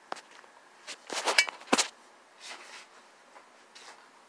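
Handling noise on a phone's microphone: a few sharp clicks and knocks with short scraping rustles, busiest about a second in, then a brief soft rustle and a couple of faint ticks.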